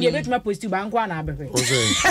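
A woman talking, then two women breaking into loud, breathy laughter about one and a half seconds in.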